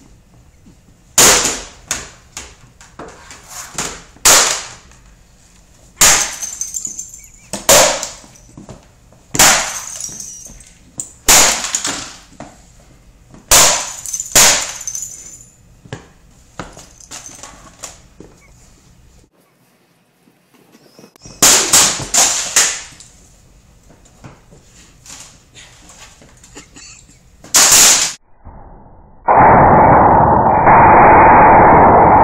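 Laptops being smashed on a concrete floor: about a dozen hard plastic-and-metal crashes a second or two apart, with loose keys and broken pieces clattering between blows. Near the end a loud, steady rushing noise cuts in.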